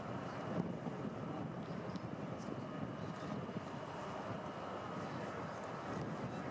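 Steady, distant engine rumble with a faint, steady high whine.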